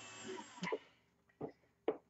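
A faint whir from a cordless drill with a buffing wheel fades out about half a second in. Three short light clicks follow as the drill and bench items are handled.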